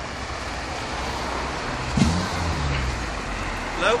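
Road traffic on a town street: a steady low rumble of vehicles, with a motor vehicle's engine passing close and loudest about two seconds in.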